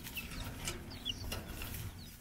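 Chickens clucking quietly, with a few short high chirps, over a low rumbling background.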